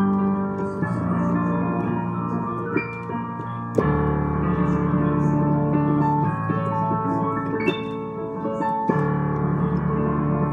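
Digital piano played with both hands: held chords, with new chords struck about a second in, again near four seconds and near nine seconds, and a few sharp accented high notes between them.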